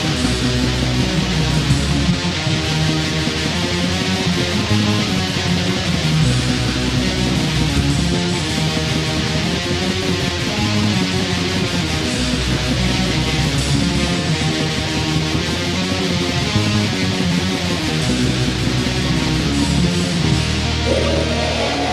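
Raw black metal from a 1998 cassette demo: a loud, continuous riff of distorted electric guitar strumming, with no break.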